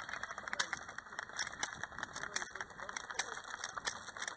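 Footsteps and legs brushing through long dry grass, heard as a run of irregular crackling clicks, with faint voices further off.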